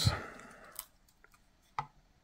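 A 9-volt battery being handled on a plastic digital kitchen scale: a few faint clicks, then a short, sharper knock near the end.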